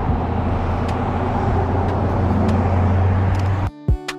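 Road traffic: cars driving past on a highway, a steady rush of tyre and engine noise with deep rumble, growing a little louder and then cutting off abruptly near the end.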